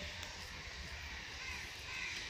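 A few short bird calls, the clearest in the second half, over a steady low outdoor rumble.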